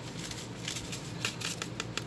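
A seasoning packet being shaken and tapped over a pot, giving a quick run of short crinkly rustles for about a second in the middle.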